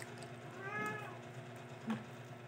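A cat meowing once, a single call of about half a second whose pitch rises and then falls. A short light tap or click comes just before the end.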